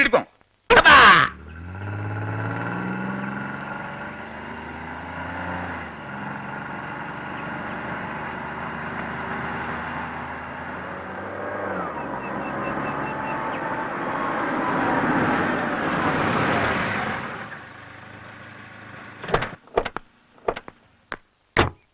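Tata Sumo engine running as the vehicle drives up the street, holding steady pitches that shift a couple of times, growing louder about three-quarters of the way through and then dropping away as it comes to a stop.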